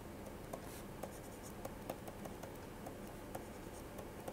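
Faint, irregular small taps and scratches of a stylus on a pen tablet as an equation is handwritten.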